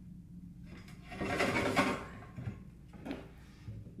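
An aluminum rocket-motor nozzle carrier with a rubber O-ring in its groove is pushed by hand into the motor case tube, rubbing and scraping as the ring squeezes in. The main push runs for about a second, followed by a few shorter shoves. This is a test fit with a single O-ring.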